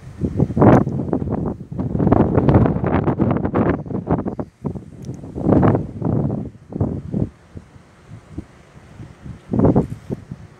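Wind buffeting the microphone in irregular gusts, loud and almost continuous for the first seven seconds, then two short gusts near the end.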